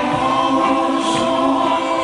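A group of male and female singers singing together in a Greek laïkó song with a live band accompanying, holding long notes.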